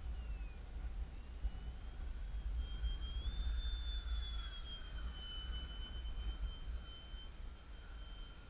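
Electric ducted fan of a ParkZone Habu RC jet, driven by a brushless motor, giving a thin high whine that rises in pitch and then drops as it passes in the middle, fading near the end. Wind buffets the microphone with a low rumble throughout.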